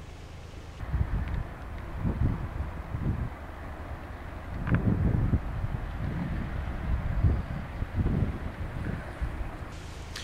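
Wind buffeting the microphone in irregular gusts, a low rumble that swells and falls.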